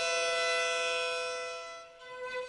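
Bowed string instruments holding a sustained chord of several notes, which fades away over the last half second.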